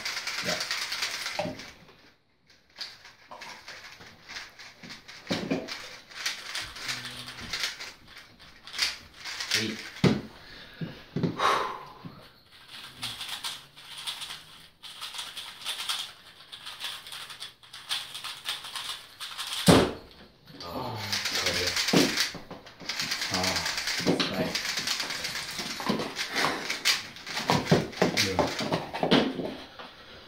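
3x3 speedcubes being turned fast by hand: bursts of rapid plastic clicking and rattling, densest in the second half, with scattered single clicks and knocks between.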